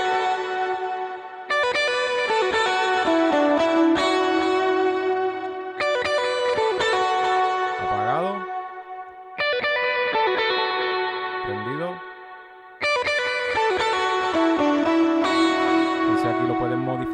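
Electric guitar played through a Line 6 Helix preset with an octave effect, ringing melodic phrases of sustained notes. A new phrase starts about every three to four seconds, with a couple of quick upward slides.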